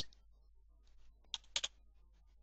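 Three computer keyboard keystrokes, one and then two in quick succession, as a browser address is edited and entered.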